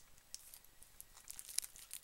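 Faint crinkling and rustling of the clear plastic wrapping on a homemade transformer as it is turned in the hands, with a few light clicks.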